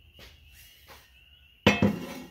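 Square steel tube set down on a steel rail: a sharp metal clank with a short ringing tail near the end, after a stretch of near quiet.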